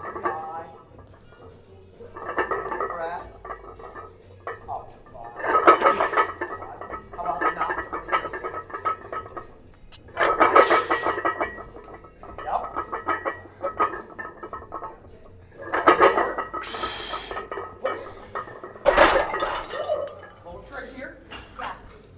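Strained, voiced exhales from a lifter doing barbell back squats, one loud burst every three to five seconds as each rep is driven up, over background music, with light metallic clinks from the loaded plates. A sharp clank about nineteen seconds in fits the bar going back into the rack.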